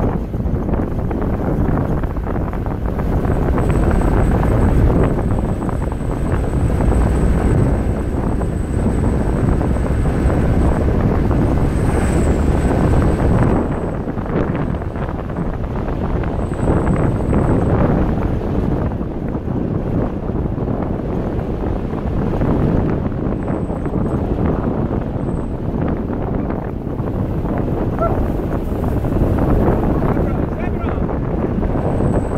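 Wind buffeting the microphone over the engine and tyre noise of a safari 4x4 driving on a dirt track, rising and falling as it goes.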